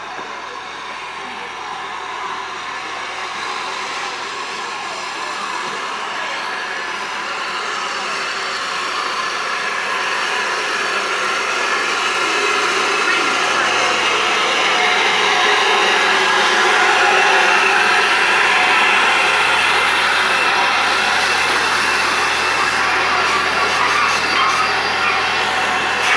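RPSI No. 4, a 2-6-4 tank steam locomotive, drifts slowly into the platform with its carriages. It makes a steady hissing and running noise that grows louder as the engine and coaches pass close by.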